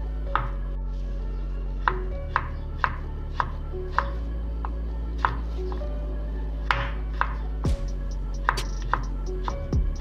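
Kitchen knife slicing garlic cloves thinly on a wooden cutting board: a sharp tap of the blade on the board about every half second, somewhat irregular.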